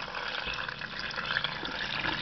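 Water pouring in a steady stream into a crock pot onto chicken bones and vegetables.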